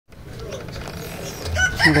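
A rooster crowing faintly in the distance, one drawn-out call in the first half; a man's voice starts near the end.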